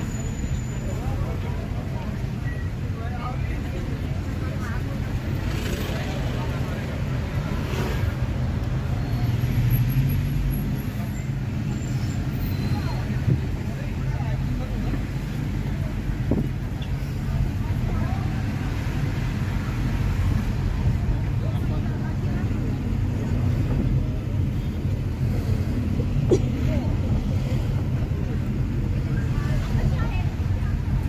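Steady low rumble of a car's engine and tyre noise heard from inside the cabin while moving slowly in traffic.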